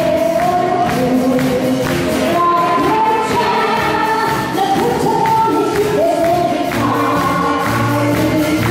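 A woman singing a melody into a microphone through a PA, backed by a live wind band with saxophones, with the audience clapping along in a steady beat.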